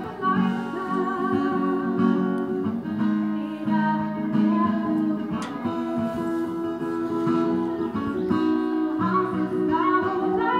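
A woman singing with vibrato while strumming an acoustic guitar, amplified through a small street speaker.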